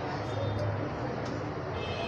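Steady background din with a low hum and faint, indistinct voices.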